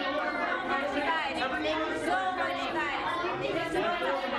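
Several reporters' voices overlapping, calling out questions at once so that no single voice comes through clearly.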